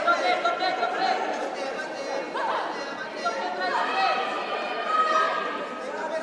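Several voices shouting and calling out at once, overlapping into a steady chatter that echoes in a large hall during a boxing bout.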